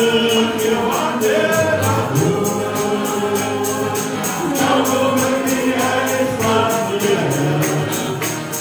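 A choir singing a gospel hymn, held and gliding sung notes over a steady, even tambourine beat.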